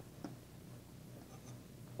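Faint handling sounds of a pair of wire strippers being picked up and moved over a work mat, with one small click about a quarter second in, over a low steady hum.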